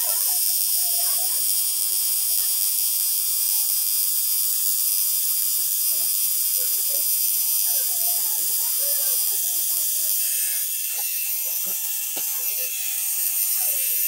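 Cartridge tattoo machine running with a steady buzzing hiss as the needle lines ink into skin, briefly quieter about two-thirds of the way through.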